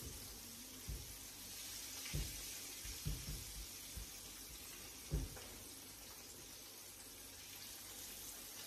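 Fish frying in oil in a pan: a faint, steady sizzle, with a few soft knocks in the first five seconds or so.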